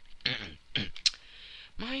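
Narrator coughing, two short rough coughs, followed by a sharp mouth click and a breath in just before speaking resumes.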